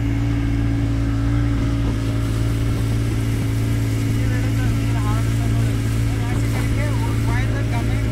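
Motorboat engine running steadily under way, a constant even drone at one pitch, with the rush of water along the hull.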